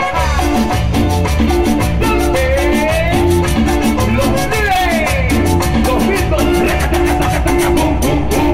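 A live band playing an upbeat Latin dance number: pulsing electric bass, keyboard and a fast, even percussion beat, with a singer on microphone.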